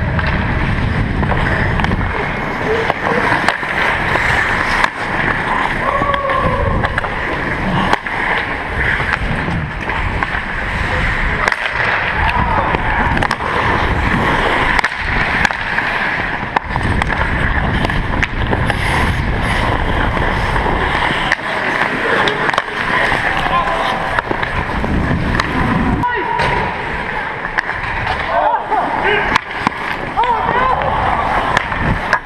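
Ice hockey skate blades scraping and carving the ice, heard close up from a skating player's camera, with occasional sharp clacks of sticks and puck. Faint voices of other players can be heard in the rink.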